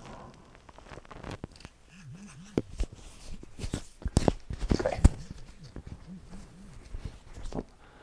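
Clothing rustle and light knocks from handling a wearable posture sensor fitted at the neck, with the sharpest knock about five seconds in. A faint wavering buzz comes twice, once about two seconds in and again near seven seconds.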